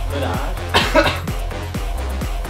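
Background music with a steady beat, and just under a second in, a short loud cough from the person chugging a canned drink.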